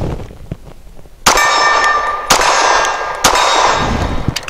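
HK P30SK 9mm pistol firing three 147-grain subsonic hollow-point rounds about a second apart. Each shot is followed by the ringing clang of a steel target being hit.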